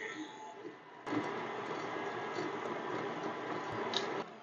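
KitchenAid stand mixer running on its lowest speed with a wire whisk, working butter into the dry cake ingredients. A quiet, steady motor hum starts about a second in.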